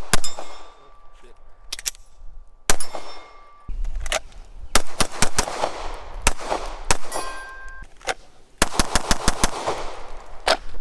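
Glock pistol fired in single shots spaced about a second apart, then a fast string of about eight shots near the end. Metallic ringing tones hang on after the first shot and again after a shot in the middle.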